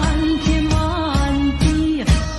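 Older Taiwanese pop song playing: a sung melody over a band accompaniment with drums.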